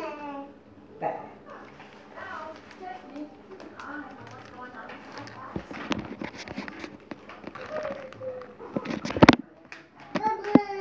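A child's voice speaking indistinctly in bits, over handling noise: rustling and clicks, with a loud cluster of knocks about nine seconds in.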